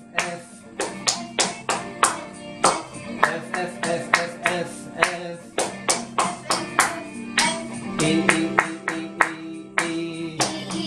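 Several people clapping a rhythm in time with music, with voices singing along.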